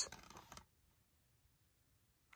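Near silence: the end of a spoken word, a faint trace for about half a second, then dead silence.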